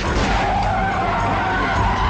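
A vehicle skidding in a film's sound mix, with music under it.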